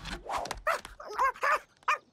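A cartoon animal's quick run of short yipping calls, about five or six in under two seconds, each rising and falling in pitch.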